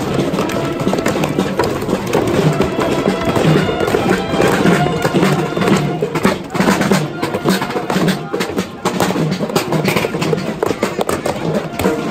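Many children beating small toy drums and homemade box drums with sticks as they march, a dense, uneven clatter of drumbeats with no shared rhythm.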